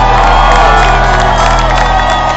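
Live folk-rock band with fiddle and guitars holding a sustained chord, with a crowd cheering and whooping over the music.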